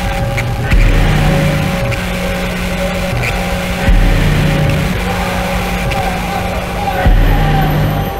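Dark trailer score: three deep booming hits, about three seconds apart, each ringing on as a low sustained drone over a thin steady high tone.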